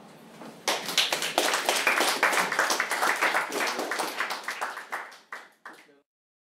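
Audience applauding, starting under a second in, then thinning out and fading near the end before cutting off.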